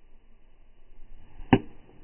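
A golf club striking a golf ball in a full swing: one sharp crack about one and a half seconds in.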